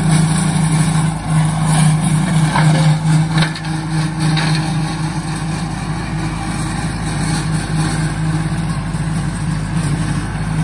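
An old farm tractor's engine running steadily at working speed as it drags a rotary cutter mowing grass, a constant low drone with a few short crackles in the first few seconds.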